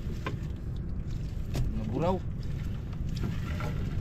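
A gill net being hauled by hand into a small outrigger fishing boat over a steady low rumble, with a couple of sharp knocks and a brief rising-and-falling voice sound about two seconds in.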